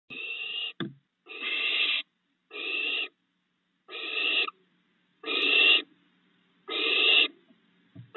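Barn owl nestlings giving their repeated hissing begging call: six hisses, each about half a second long, roughly one every second and a half. This is the food-begging of hungry owlets.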